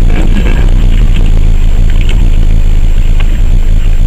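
A car driving on a rough gravel road, heard from inside the cabin: a loud, steady low rumble of engine and tyres.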